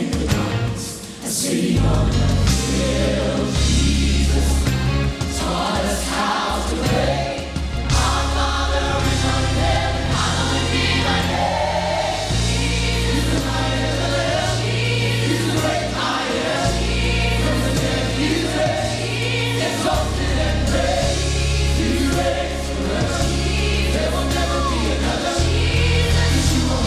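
Live gospel music: a choir and praise team singing together with a band, deep bass notes held under the voices.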